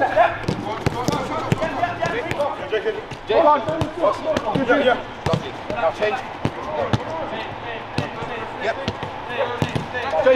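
A football being kicked and struck on an artificial pitch: a string of sharp thuds at irregular intervals, with voices calling out between them.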